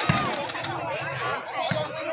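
Crowd of spectators chattering and calling out, many voices overlapping, with two short knocks, one just after the start and one near the end.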